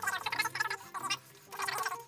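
Small hand roller spreading wet PVA glue over a paper strip: a sticky, wet crackle in two bursts with a short lull between.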